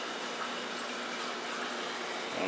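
Steady water noise of running aquarium filtration, an even trickling, bubbling hiss with a faint low hum under it.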